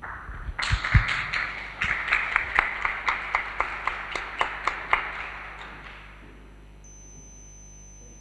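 Small audience applauding, individual claps standing out, dying away after about five seconds. A couple of low thumps near the start.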